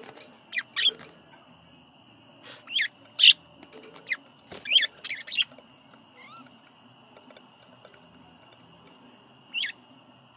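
Pet budgerigars giving short, sharp chirps that sweep down in pitch, in small bursts of two or three with gaps between them. A faint steady high tone runs behind them.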